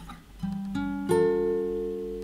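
Instrumental music: a plucked string instrument, like an acoustic guitar, plays three notes one after another, each ringing on, after a brief dip at the start.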